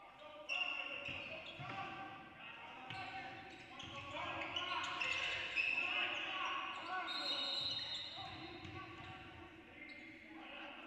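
Live basketball court sound in an echoing gym: the ball bouncing on the hardwood floor and short high sneaker squeaks, loudest around the middle, with indistinct players' voices.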